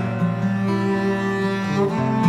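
Cello playing sustained low bowed notes in a chamber-folk song, moving to a new note about two-thirds of a second in and again near the end.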